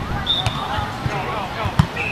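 Players' voices calling out during a sand volleyball rally, with one sharp slap of a hand striking the volleyball near the end.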